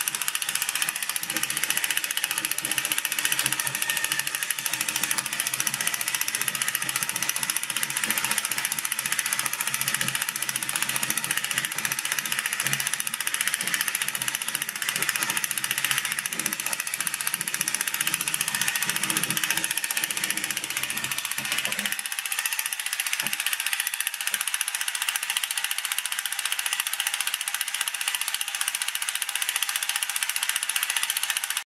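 Battery-powered Botoy ForceBot toy robots running, their motor-driven plastic gearboxes making a steady mechanical gear chatter. About 22 seconds in, the lower part of the sound drops away and a thinner rattle carries on.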